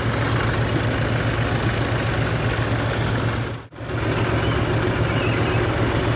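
Farm tractor's diesel engine running steadily close by, with a low, even drone. The sound breaks off for an instant a little past halfway.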